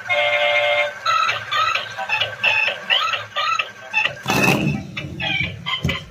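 Battery-powered dancing toy car playing its built-in electronic tune: a held beeping tone for about a second, then a quick run of short chirping notes, about three a second. A brief rushing noise comes about four seconds in.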